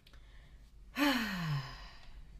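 A woman's breathy, voiced sigh about a second in, falling steadily in pitch and lasting under a second.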